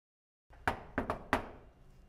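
Four knocks on an apartment door in quick, uneven succession: one, a quick pair, then one more, each with a short ring-off.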